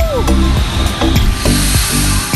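Background music with a steady, clicking beat over a repeating bass pulse.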